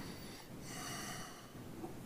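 A short sniff, a person's breath near a microphone, lasting under a second about halfway in, over faint room tone.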